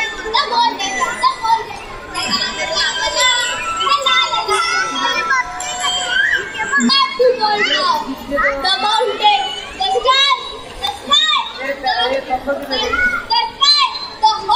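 Many children's voices chattering and calling out over one another, a dense and continuous babble with no single clear speaker.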